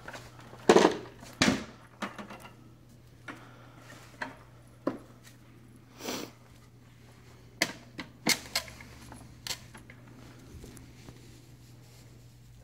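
Buckets of cast lead ingots being handled: a dozen or so separate knocks and clinks as the ingots shift against each other and the plastic buckets and wire handles bump while being lifted off and set onto a scale.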